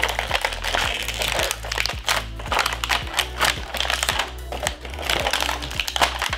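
Clear plastic packaging bag crinkling as an action figure is worked out of it, over background music with a steady beat.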